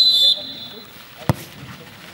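A referee's whistle blast, one steady shrill note, ends about a third of a second in, signalling that the free kick may be taken. About a second later comes a single sharp thud as the football is kicked.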